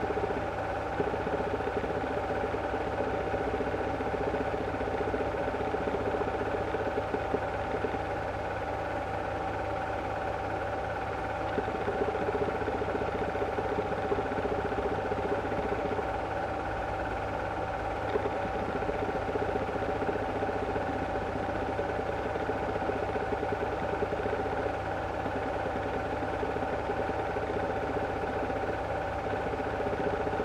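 8mm cine projector running steadily: a constant mechanical whirr with a steady hum tone and a fast, even flutter from the film transport.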